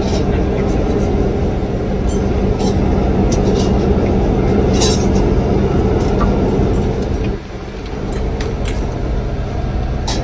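Steady cabin noise of a moving bus: low engine hum and road rumble, with scattered light clinks of steel plates and spoons. The level dips briefly about seven seconds in.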